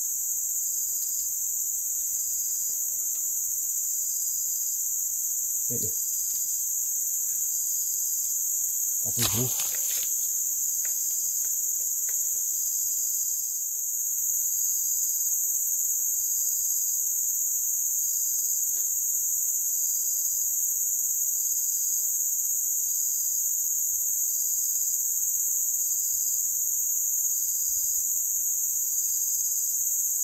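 A steady, high-pitched chorus of forest insects, with a faint pulsing note repeating a little more than once a second under it. A short soft knock or rustle comes about nine seconds in.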